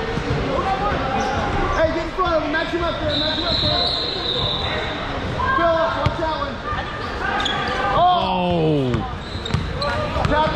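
A basketball bouncing on a hardwood gym floor, with players' and spectators' voices echoing in a large gymnasium.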